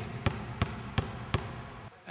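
A basketball bounced on a hardwood gym floor, five even bounces at about three a second, stopping about a second and a half in: the set number of bounces in a free throw shooter's pre-shot routine.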